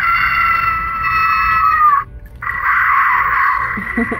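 Babble Ball pet toy playing recorded animal sounds through its tiny speaker, thin and tinny. A pitched call holds its tone and cuts off about two seconds in; after a brief pause a harsher, noisier animal sound follows.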